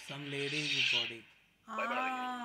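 A low, strained voice under a raspy hiss for about a second, a brief near-silence, then a drawn-out voiced exclamation that sags in pitch near the end.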